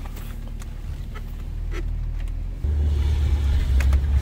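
Volkswagen Phaeton heard from inside the cabin as it moves off: a low steady rumble that jumps louder about two-thirds of the way through as the car pulls away.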